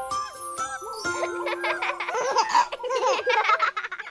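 A chime-like music note rings on, then a baby and young children giggle and laugh together in quick bursts.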